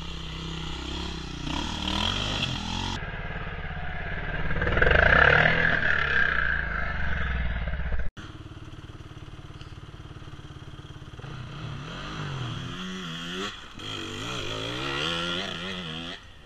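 Enduro dirt-bike engines revving hard on a rocky climb, loudest a few seconds in. After an abrupt cut just past the middle, another bike's engine rises and falls in pitch as the throttle is blipped over and over.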